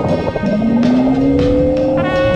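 Whine of a handheld underwater scooter's electric thruster, rising slowly in pitch from about half a second in as the motor speeds up, over background music.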